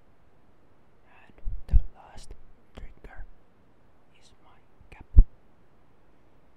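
Close-miked ASMR whispering in short breathy bursts, unintelligible, with a few low thumps on the microphone; the loudest thump comes about five seconds in.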